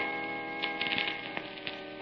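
Surface noise of a badly scratched old transcription record: a few irregular faint clicks over a steady hum with several held tones.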